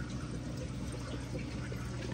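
Steady running water with a low hum from an aquarium sump system: water draining through the plumbing and the return pump running.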